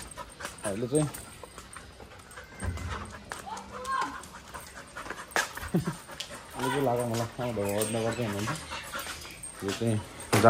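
A dog panting, with a man's voice coming in briefly about a second in and again for a couple of seconds near the end.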